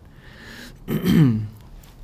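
A man clearing his throat once, about a second in, the sound falling in pitch as it ends.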